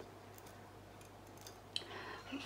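A quiet room with a steady low hum and a few faint, short clicks spread across two seconds, from small handling of tools.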